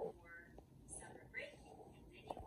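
Faint, hushed speech in short snatches over a quiet room.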